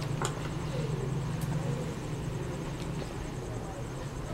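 A few faint clicks of a metal spoon against a plate over a steady low background hum.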